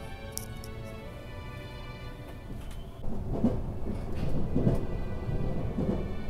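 Background music, joined about three seconds in by a loud low rumble from the moving train heard inside the passenger cabin, swelling several times as it passes under the overhead structures.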